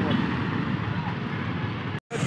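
Road traffic noise, with a motorcycle engine running as it passes close by and faint voices of people.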